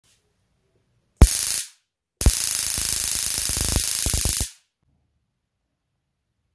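High-voltage arc from a homemade taser (3.7 V battery, step-up transformer and voltage multiplier) sparking across the gap between its two output wire ends: a harsh crackling hiss in two bursts, a short one of about half a second and then a longer one of about two seconds, each starting and stopping abruptly.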